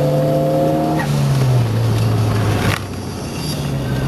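Car engine running at low, steady revs; its pitch eases slightly lower about a second and a half in. A brief rush of noise comes near the three-second mark.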